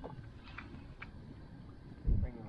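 Low, steady wind rumble on the microphone on open water, with two faint ticks about half a second apart.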